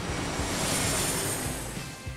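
Jet airplane fly-by sound effect: a rushing noise that swells and then fades, with background music underneath.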